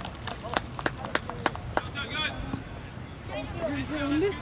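Sharp, irregular clicks several times a second through the first half, then distant voices calling out across a soccer field from about two seconds in.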